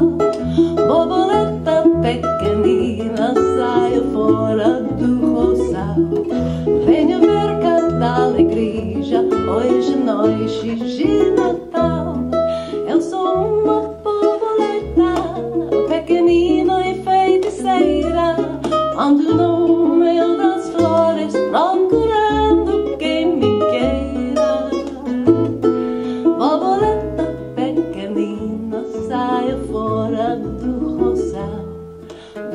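Live acoustic music: a ukulele playing over a plucked upright double bass line, with a woman singing. The bass notes walk steadily underneath throughout.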